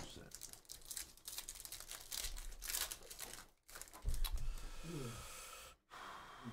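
A foil trading-card pack wrapper torn open and crinkled by hand, with a quick run of crackles through the first three seconds or so.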